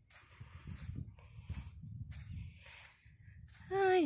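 Wind buffeting the phone's microphone in an uneven low rumble, with light rustling noise from handling; a woman's voice starts speaking near the end.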